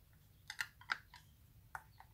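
A few faint, light clicks and taps, about five in two seconds, of a paint stir stick against a metal jar lid as the last of the paint is scraped out.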